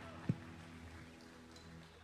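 The worship band's final held chord dying away as the song ends, its steady tones fading steadily, with a single soft knock about a third of a second in.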